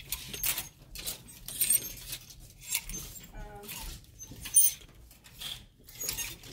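Plastic clothes hangers clacking and sliding along a clothing rack as garments are pushed aside one by one, with fabric rustling; a series of irregular sharp clicks, the loudest about four and a half seconds in.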